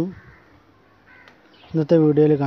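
A bird's short call, faint, about a second in, between stretches of a man's voice.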